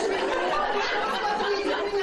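Many overlapping voices of small children and adults chattering together in a room, a steady babble with no single voice standing out.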